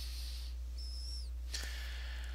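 Steady low electrical hum on a headset microphone in a pause, with a brief high whistle-like tone about a second in, then a faint click.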